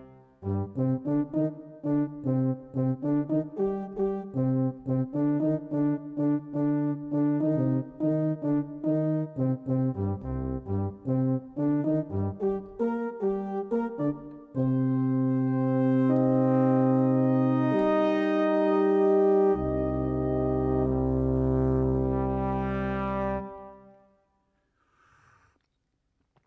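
Sampled brass ensemble from Native Instruments' Valves library (flugelhorn, French horn, trombone, euphonium and tuba) playing a preset phrase. For about fourteen seconds it plays quick, short repeated notes, then it moves into long held chords that change once and fade out near the end.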